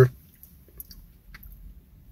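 Faint, soft clicks and squishes of a person chewing a mouthful of a soft-bread chicken sandwich, with the mouth closed.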